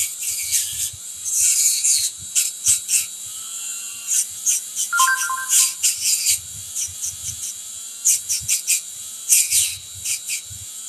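Handheld rotary tool running with a small abrasive wheel on copper wire, giving repeated short scratchy hisses over a steady motor hum as the wheel touches the wire. The wheel is rubbing the dark patina off the raised wire to highlight it. A brief two-note electronic beep sounds about five seconds in.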